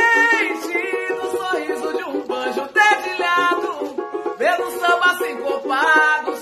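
Samba music: a woman's held sung note ends just after the start, then a small plucked string instrument plays quick runs while short sung slides come in about every second.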